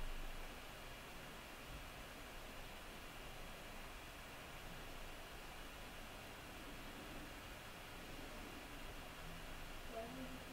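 Faint steady hiss with no distinct sounds in it: room tone or recording noise.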